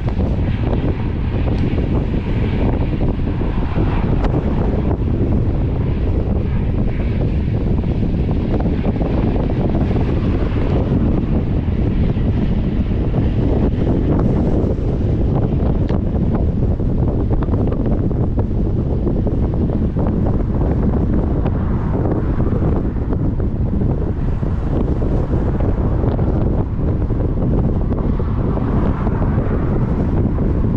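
Strong wind buffeting the microphone: a steady, rumbling roar of gusts with no let-up.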